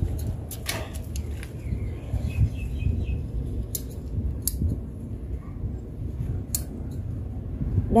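Scissors snipping through bok choy stems during the harvest: a handful of sharp, separate snips spaced a second or more apart, over a low steady rumble.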